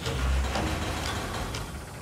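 Intro sound-design rumble: a steady, noisy mechanical-sounding sweep with a low rumble, laid over orchestral intro music. It fades somewhat toward the end, as the strings come back in.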